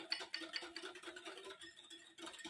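Wire whisk beating a thin egg, sugar and milk mixture in a glass bowl: faint, quick ticking and swishing of the wires against the glass, about five strokes a second.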